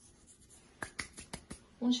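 About five light, sharp clicks in quick succession over under a second, from kitchen items being handled in a quiet room. A woman's voice begins near the end.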